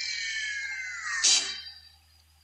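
The closing sound of a TV promo's soundtrack: a pitched tone slides steadily down over about a second, then a short loud hit about a second and a quarter in fades away to near quiet.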